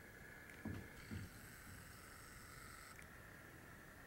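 Near silence: faint room tone with a steady faint hum, and two soft low knocks about a second in.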